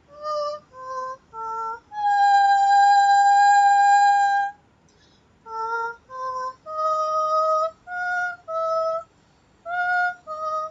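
A woman's high, wordless sound-healing vocals: short separate sung notes jumping up and down in pitch, with one long held note of over two seconds about two seconds in and brief pauses between phrases.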